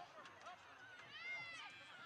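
Faint, distant high-pitched voices shouting and calling out across a soccer field, with one longer held call about a second in.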